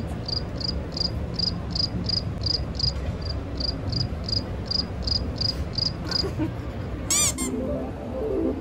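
An added cricket-chirp sound effect, marking an awkward silence: short high chirps at an even pace of about three a second, stopping about six seconds in, over the low steady hum of a crowded exhibition hall. Near the end comes a brief, very high sweeping sound effect.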